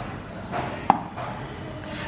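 A single sharp clack about a second in: a stainless steel mixer-grinder jar set down on the kitchen countertop, over low room noise.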